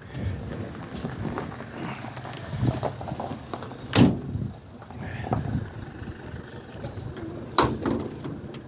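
A Morris Minor Traveller's door shut with a single sharp thud about halfway through, amid handling and movement noise, then a lighter metallic click near the end as the bonnet catch is worked.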